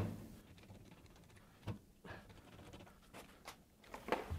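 A few faint, short clicks and taps from a hand rivet nut tool being handled while setting a rivet nut, over quiet room tone.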